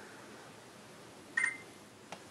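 A single short electronic beep from the HTC Rezound's camera app about one and a half seconds in, the tone as video recording is stopped, over faint room hiss.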